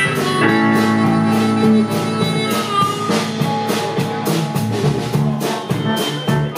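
Live rhythm & blues band playing: blues harmonica blown into a vocal microphone, with bending held notes, over electric guitar, electric bass and drum kit keeping a steady beat.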